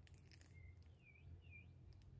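Near silence over a low hum, with a faint rustle at the start and three faint bird chirps about half a second apart, the last two dipping and rising in pitch.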